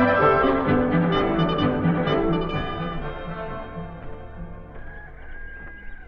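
Orchestral bridge music with brass in a radio drama scene change, full and rhythmic for the first few seconds, then fading down to soft held notes.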